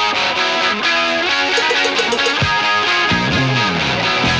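Live 1970s hard rock band playing: electric guitars over drums, with a falling run about three seconds in.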